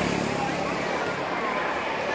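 Street traffic noise: a motor vehicle's engine hum, steady in the first half and fading after about a second, over faint background voices.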